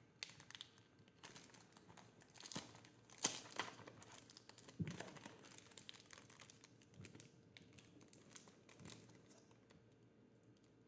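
Plastic football-card pack wrapper crinkling and tearing as it is handled and opened: faint, irregular crackles, the sharpest about three and five seconds in.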